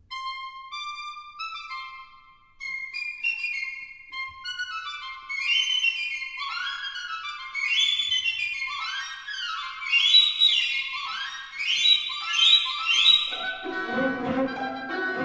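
Solo flute playing a passage of short stepped notes that turns into quick rising and falling runs, growing louder; lower orchestral instruments come in right at the end.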